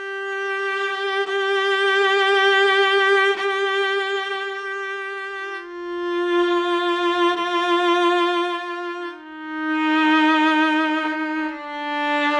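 Sampled solo viola from the Spitfire Solo Strings library, played from a keyboard. It plays a slow lead line of four long notes, each a step lower than the last. Each note swells with progressive vibrato.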